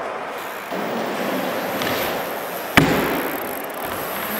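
Mini BMX tyres rolling over wooden skatepark ramps, a steady rolling noise, with one sharp knock about three seconds in.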